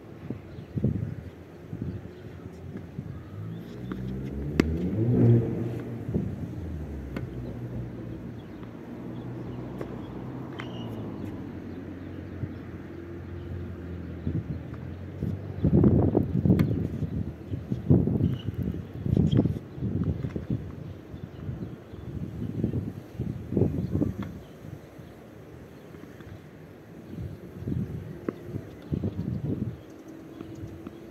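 A car passing by, its engine note swelling and fading about five seconds in, with occasional sharp pops of a tennis racket hitting the ball and gusts of wind buffeting the microphone in the second half.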